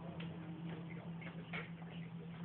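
Light, irregular clicks and clinks of metal sockets being handled and tried one after another, over a steady low hum.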